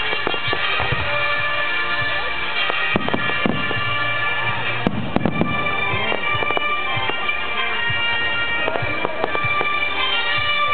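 Fireworks display with bangs and crackling from shells and comets, clustered about three, five and nine seconds in, over loud music full of long held tones.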